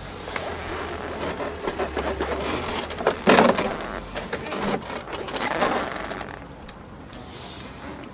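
Hard plastic compartment cover being pushed, knocked and scraped against the van's doorstep tool well, with irregular clicks and rustling and one loud crunching knock about three seconds in. The cover won't seat and close because the jack inside has been fitted the wrong way round.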